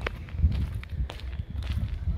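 Footsteps of a person walking on an asphalt lane while carrying the camera, heard as irregular low thuds.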